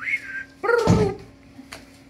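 German Shepherd dog giving a short high whine, then a single louder bark about two-thirds of a second in.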